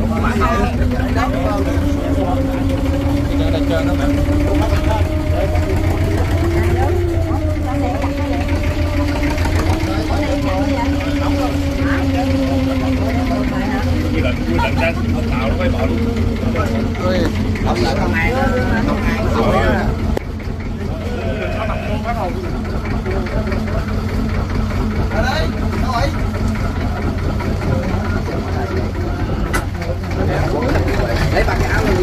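A wooden boat's engine running steadily: a low drone with a hum whose pitch wavers slightly, rising a little about seven seconds in. The level eases down slightly about twenty seconds in.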